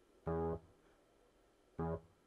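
Two short electric-piano-like notes from the Xpand!2 software instrument, each about a third of a second long and about a second and a half apart, sounding as notes are clicked into the piano roll.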